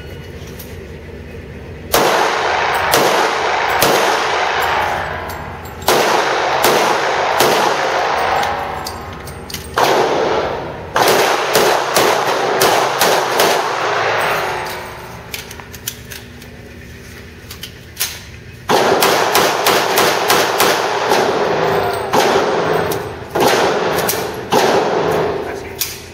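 Handgun shots fired in rapid strings of several with short breaks between them, starting about two seconds in, with one longer break of about four seconds past the middle. Each shot rings and echoes in the enclosed range.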